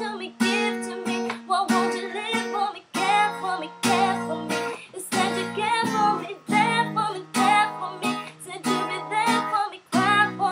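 Acoustic guitar strummed in a steady rhythm, with a woman singing the melody over it.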